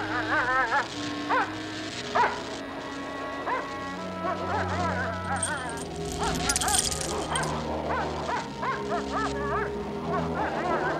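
A cartoon wolf yelping and whining in short wavering cries over background score with held notes. A bright high shimmering effect rises in about halfway through.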